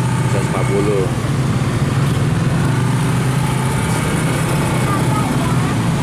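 Steady low rumble of a nearby idling motor vehicle engine, with roadside background noise and brief voices.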